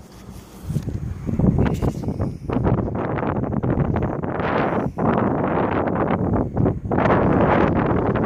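Wind buffeting the camera's microphone, a gusting rush that swells and drops, with short lulls about halfway through.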